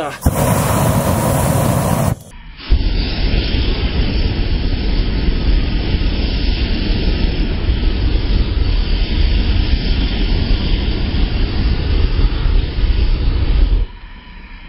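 Improvised aerosol flamethrower, a lit can of Raid insect spray, jetting flame with a steady rushing noise. It breaks off briefly about two seconds in, then runs on duller and heavier in the bass until it stops at the end.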